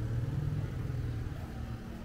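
Road traffic: a motor vehicle engine, most likely a motorcycle on the street, giving a low, steady hum.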